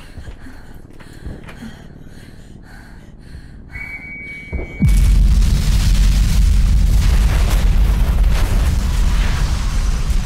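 A faint steady whistle tone, then a quick falling whistle and, about five seconds in, a sudden loud explosion from a wartime air raid. It is followed by a deep, heavy rumble that carries on.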